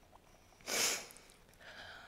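A woman sniffs once, close to the pulpit microphone: a short hiss of breath through the nose a little under a second in.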